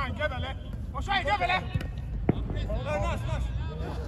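Players shouting to each other in short bursts on an outdoor football pitch, with one sharp kick of the ball a little past two seconds in.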